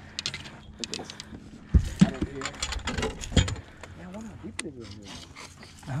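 A netted striped bass being brought aboard: scattered knocks and clatters of the landing net and the thrashing fish against the boat, the loudest about two seconds in, with a voice murmuring briefly.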